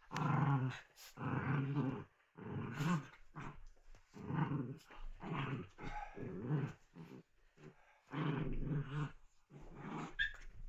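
Two small dogs play-fighting and growling, in about eight bouts of a second or so each with short breaks between.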